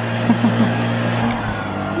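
Handheld leaf blower running steadily with a constant low hum and a rush of air as it blows leaves off.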